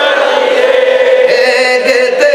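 Men's voices chanting a melodic Islamic devotional chant through microphones, long notes held and sliding between pitches, led by one strong voice.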